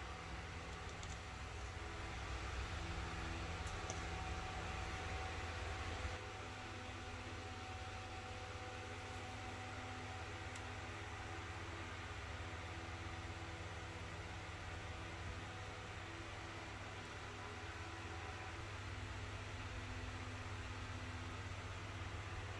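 Steady low mechanical hum with hiss, like a fan or kitchen appliance running, a little louder for the first six seconds and then even. No distinct handling sounds stand out.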